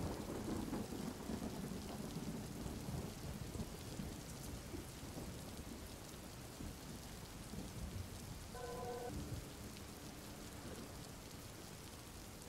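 Faint steady rain, with a low thunder rumble that fades over the first few seconds. A brief faint tone sounds about nine seconds in.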